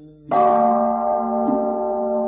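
A Buddhist temple bell struck once about a third of a second in, its several tones ringing on steadily and slowly fading, sounded between verses of the chanting.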